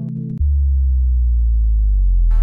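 Music breakdown: about half a second in, the beat drops out and one long, deep synth bass note is held, its pitch slowly falling.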